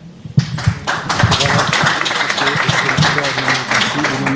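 Audience applauding, starting just under half a second in, with some voices mixed in.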